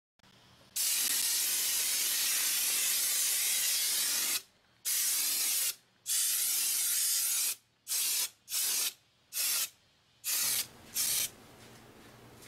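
Compressed air hissing through a homemade pen-tube venturi paint sprayer on an air blow gun, atomising paint from a small cup. It sprays in three long bursts, then five short puffs about half a second apart.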